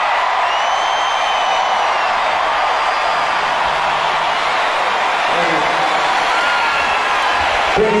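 A large arena crowd cheering and screaming at the end of a song, with a few long whistles over the noise in the first couple of seconds.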